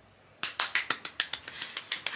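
A drumroll of rapid sharp taps, about ten a second, starting about half a second in, played as a build-up to an introduction.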